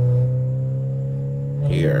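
Honda D16A6 non-VTEC four-cylinder engine heard from inside the cabin, pulling in gear with its note rising slowly and steadily in pitch as the revs climb. The clutch is slipping badly under the load.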